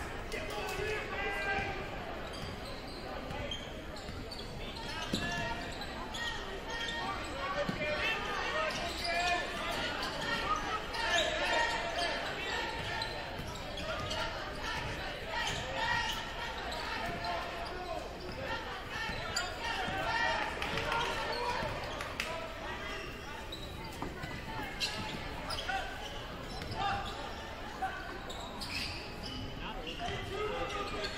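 A basketball dribbled on a hardwood gym floor, repeated knocks, over the continuous chatter of a crowd of spectators echoing in the gym.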